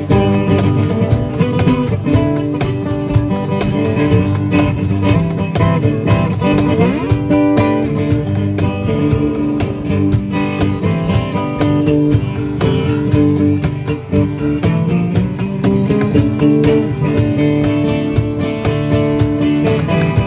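Two acoustic guitars, strummed and picked, with a cajon keeping a steady beat: an instrumental passage of a rock song with no singing, including a few bent or sliding guitar notes about seven seconds in.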